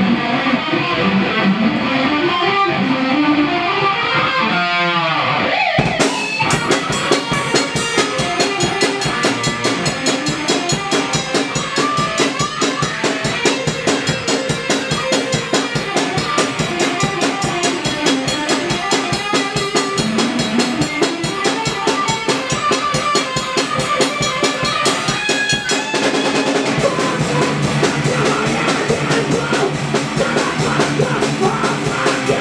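A band plays an instrumental passage on electric guitar and drum kit. The first few seconds hold a guitar riff with a sweeping pitch slide, then the drums come in with a fast, steady beat about six seconds in.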